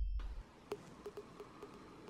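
The last of the intro music dies away in the first half second. Then comes faint room tone with a string of soft, small clicks.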